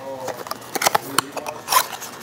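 Cardboard box and packaging being rummaged through by hand: rustling and scraping with scattered sharp clicks, two of them louder about a second apart, as the contents are pulled out.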